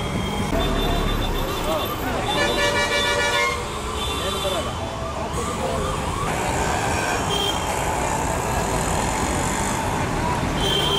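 Busy bus station: a crowd chatters over idling bus engines and traffic. A vehicle horn sounds for about a second, a little over two seconds in, with shorter toots later.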